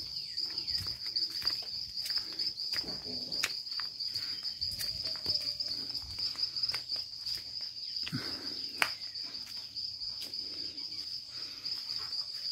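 Insects trilling steadily at one high pitch, with scattered light clicks and knocks over the trill.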